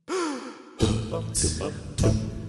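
Opening of an a cappella song made with voices only: a falling vocal swoop, then from just under a second in a low sung bass line and vocal percussion hitting about every half second.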